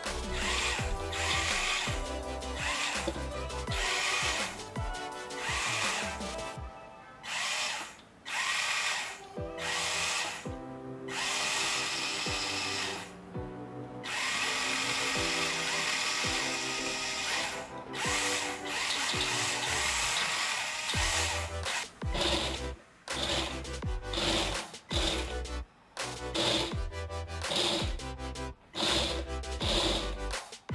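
Small DC gear motors of a four-wheel mecanum-wheel car spinning the wheels in short runs, starting and stopping every second or two as the tilt-controlled transmitter changes the car's direction. Background music plays under it.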